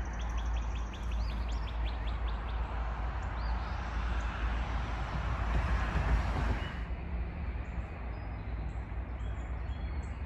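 Birds chirping outdoors: a quick run of short high chirps in the first couple of seconds, then a few single rising chirps, over a steady rushing background that eases off about seven seconds in.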